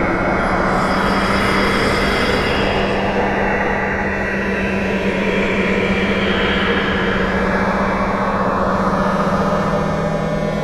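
Algorithmic electroacoustic music made in SuperCollider: a dense, steady wash of noise over a held low drone.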